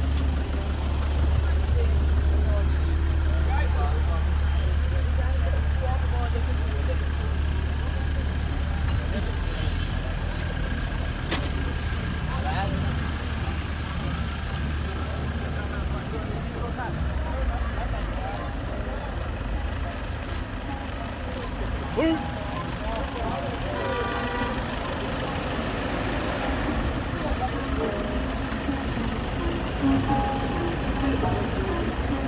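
A vehicle engine idling with a steady low drone that weakens about halfway through, with people's voices in the background.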